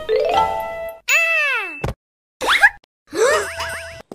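Cartoon sound effects: a rising run of bright chiming notes, then a long falling whistle-like glide, followed by a few quick rising glides.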